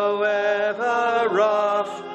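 Slow hymn-like singing in long held notes, moving to a new note about every half second with short slides between them.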